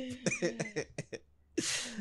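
Laughter tapering off in short choppy bursts, then a brief gap and a cough near the end.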